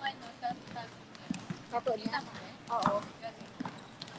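Basketballs bouncing irregularly on a court floor, a scatter of short knocks, with voices talking over them.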